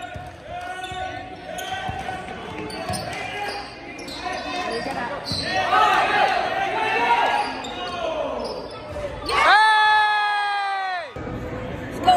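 Crowd voices shouting and cheering in a large gym during a basketball game, with a ball bouncing on the hardwood. Near the end the scoreboard horn sounds once, loud and held for about a second and a half.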